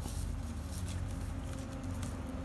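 Faint handling noise from fingers moving a dead tokay gecko on a woven plastic mat: a few soft taps and rubs over a steady low hum.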